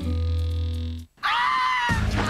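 TV channel promo jingle holding a low sustained note, which cuts off abruptly about a second in. After a brief gap, a high pitched sound bends up and then down.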